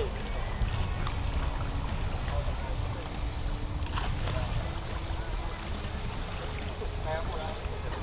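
Wind rumbling on the microphone over lapping lake water, with one short knock about four seconds in.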